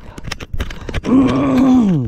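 A man clears his throat. About a second in he lets out a long groan held at one pitch, which drops away at the end.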